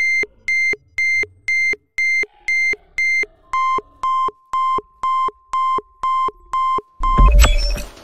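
Electronic beeping sound effect for the Omnitrix alien watch: short, even beeps, two a second, that drop to a lower pitch about halfway through. A loud burst of sound comes near the end.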